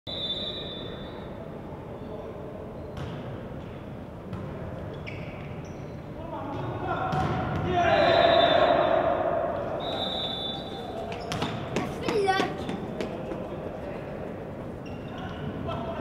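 Volleyball bouncing and being struck, echoing in an indoor sports hall, with players and spectators shouting. The voices are loudest about halfway through.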